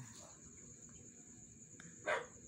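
Near silence, with a faint, steady high-pitched insect trill, like crickets, running throughout.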